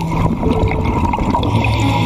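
Water gurgling and churning in a reef aquarium, heard through an underwater camera, with background music faint beneath it.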